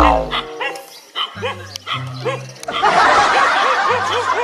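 A dog barking over a bouncy comedic music track with a repeating pattern and low bass notes; a falling sweep with a low thump at the start, and the sound grows louder and denser from about three seconds in.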